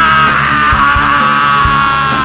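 Hardcore punk band recording: electric guitar and drums, with a long held high note that sags slightly in pitch over a steady drum beat.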